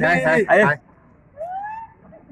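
Young men's voices calling out: the tail of a long held shout, then quick excited exclamations for under a second, and a short rising call about a second and a half in.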